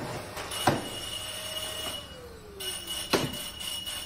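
Vacuum cleaner running with a steady whine, broken by three sharp clicks or knocks.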